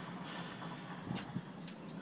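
Quiet background: a faint steady hum, with two faint ticks, one about a second in and one near the end.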